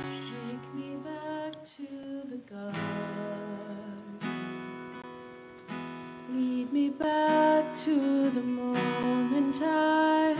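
Slow worship song on an acoustic guitar, chords strummed every second or two. From about seven seconds in, a woman's singing voice comes in and the music grows louder.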